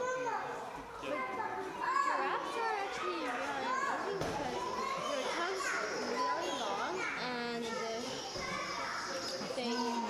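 Many children's and adults' voices talking and calling at once, a continuous babble of visitors echoing in a large indoor animal house.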